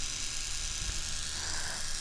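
Small handheld electric facial hair trimmer running steadily close to the microphone, a low buzz under a bright hiss.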